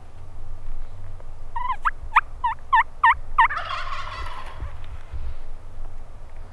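A run of about seven turkey yelps, then a wild turkey gobbler, a Merriam's, gobbling once, a rattling burst lasting about a second that follows straight on from the last yelp.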